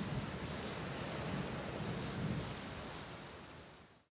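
Steady rain falling, with a low rumble underneath, slowly fading out and dying away near the end.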